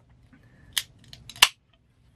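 Pull tab of an aluminium LaCroix sparkling-water can being worked open: a few sharp clicks, the loudest about a second and a half in as the can cracks open. The sound then cuts off suddenly.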